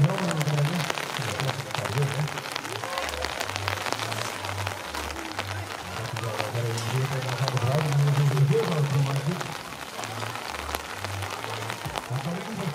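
Rain pattering steadily, with music playing in the background, its bass notes stepping up and down.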